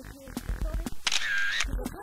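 Background music with a steady beat, with a bright half-second sound effect about a second in.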